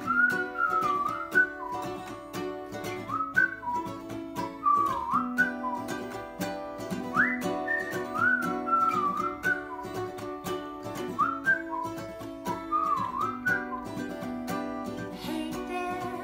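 A whistled melody over strummed acoustic guitar and ukulele. The whistle comes in four repeating phrases about four seconds apart, each opening with an upward slide, and stops shortly before the end while the strumming runs on.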